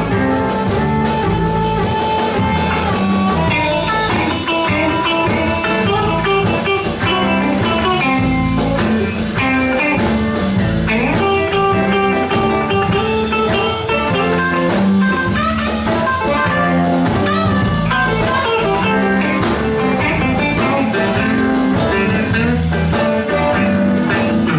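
Live blues band playing: a harmonica played through a vocal mic takes the lead over electric guitar, bass guitar and drum kit, with a steady beat.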